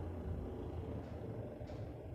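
Faint, steady low rumble of background noise with no distinct event.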